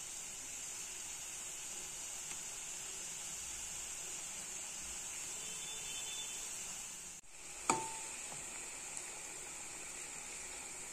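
Balushahi dough rings deep-frying in hot oil in a steel pan: a steady sizzle. About three-quarters through the sizzle drops out for a moment, then comes one sharp knock with a short ring.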